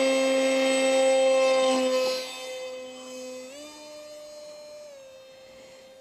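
The brushless motor of an electric foam park jet (GepRC GR2306 2750 kV turning a 6x3 prop on 4S) runs at high throttle with a steady, high whine. The whine is loud for about two seconds, then fades as the hand-launched plane flies off. Its pitch steps up slightly about three and a half seconds in.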